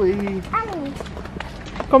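Voices talking, with faint footsteps on the pavement in the quieter stretch between the words.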